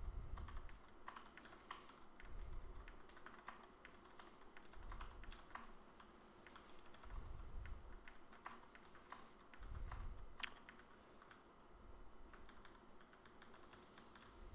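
Computer keyboard typing, faint and irregular: quick bursts of keystrokes as code is edited, with soft low thuds about every two and a half seconds.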